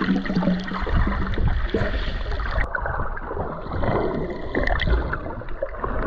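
Muffled underwater sound picked up by a submerged camera: water sloshing and bubbling with many small crackles and clicks over a low rumble. The higher sounds drop away abruptly about halfway through.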